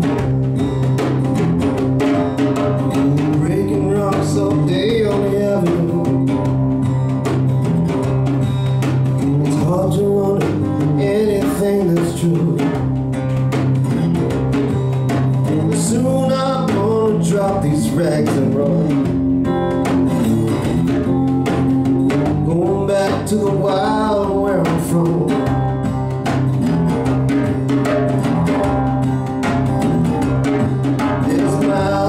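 Live instrumental passage on lap slide guitar, its notes gliding up and down every few seconds, over a steady hand-drum beat.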